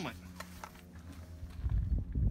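Soft rustling and a few light taps as a cloth bucket hat is picked up and laid over a holstered pistol, over a low steady hum. A low rumble builds near the end.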